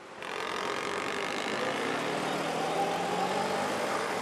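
Road traffic: a steady mix of vehicle engines and passing cars on a busy street, fading in at the start.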